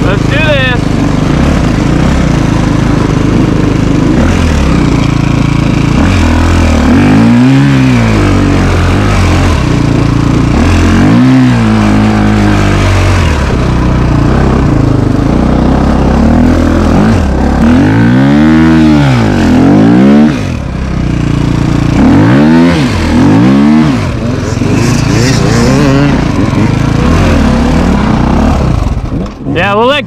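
KTM dirt bike engine running under the rider, heard close up from the bike, its pitch rising and falling several times as the throttle is opened and closed.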